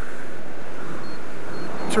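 Steady rush of wind noise on a parachutist's headset microphone under an open canopy, while both front risers are held down and the canopy dives for a high-speed approach.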